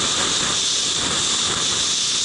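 Steady rushing hiss of wind buffeting the microphone and skis sliding over packed snow during a downhill run.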